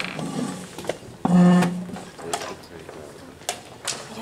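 Wooden chess pieces being set down and chess-clock buttons pressed in quick blitz play: sharp clicks near the start and three more in the second half. About a second in there is a brief loud voice.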